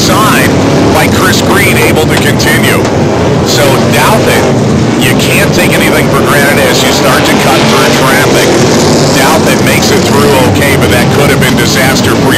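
Several stock car engines running hard together in a continuous loud din, their notes rising and falling as the cars accelerate and pass by.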